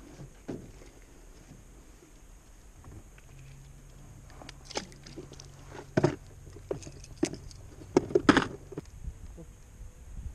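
Knocks and clatters of fishing gear handled in an aluminium jon boat, a few scattered sharp strikes with the loudest cluster about eight seconds in. A low steady hum runs underneath from about three seconds in until shortly before the end.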